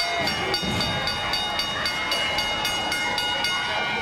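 Ring bell struck rapidly, about four times a second, with its ringing tone held over the strikes until they stop about three and a half seconds in: the bell signalling the end of the match.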